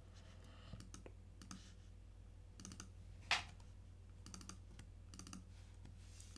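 Faint, scattered clicks of a computer keyboard and mouse as short values are typed into a list, with one louder click a little past the middle.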